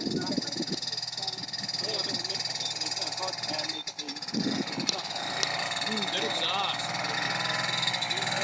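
Snowmobile engine running in the distance as the machine crosses open snow toward the listener, with quiet voices murmuring close by.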